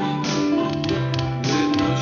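Music: steady held notes with short, sharp note attacks.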